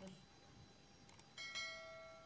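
Subscribe-button overlay sound effect: a couple of quick mouse clicks about a second in, then a bright bell ding that rings on and slowly fades.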